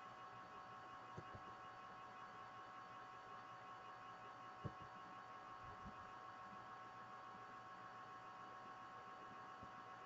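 Near silence: faint steady hum of an online call's audio line, with a couple of faint clicks.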